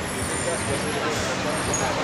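Street noise: road traffic running past, with people's voices chattering in the background.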